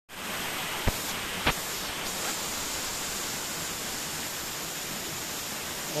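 Steady rush of shallow water running over a rock slab, with two short knocks about one and one and a half seconds in.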